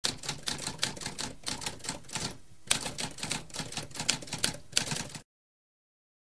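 Typewriter typing: rapid key strikes, several a second, with a brief pause a little before the halfway point, then typing again until it stops abruptly about a second before the end.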